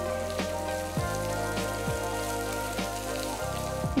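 Sliced onions sizzling in hot oil in a frying pan as they sauté, under background music with held tones and a steady beat.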